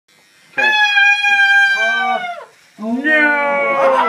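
A cordless electric hair clipper running with a steady high whine, which drops in pitch and cuts out a little before halfway, then starts again at a lower pitch. The owner says the clipper's charge is already starting to give out.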